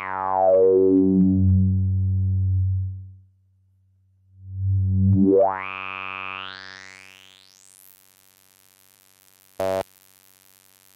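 Steve's MS-22 dual filter, linked into a resonant band-pass, sweeping a buzzy synth drone by hand. The resonant peak glides down from very high to low, the sound cuts out for about a second, then the peak glides back up to the top and fades. A short blip comes near the end.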